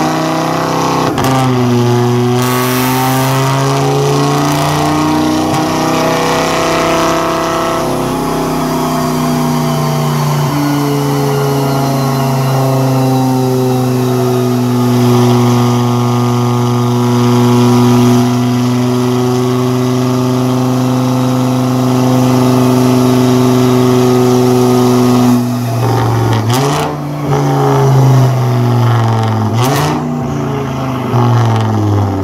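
A car's engine run on a chassis dyno, held under load with its pitch climbing slowly, dropping briefly about ten seconds in, then climbing again. It falls off about 25 seconds in, followed by a couple of short revs near the end.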